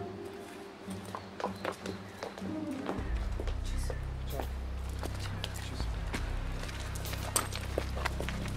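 Footsteps coming down an outside staircase and walking on, a series of short clicks over faint background music. About three seconds in, a low steady rumble comes in suddenly.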